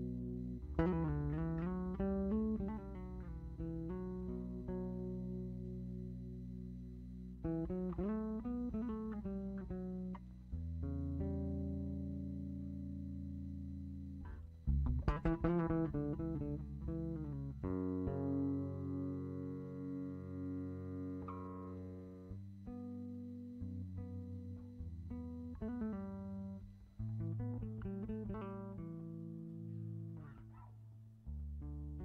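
Solo electric bass guitar playing chords and sustained notes, some of them bent up and down in pitch, with a loud strummed chord about halfway through.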